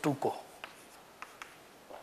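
Chalk writing on a chalkboard: faint scratching with a few light taps as letters, a bracket and an arrow are drawn.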